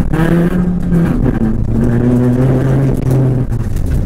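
Rally car's engine heard from inside the cabin, driven hard along a gravel stage, with its pitch stepping down about a second in.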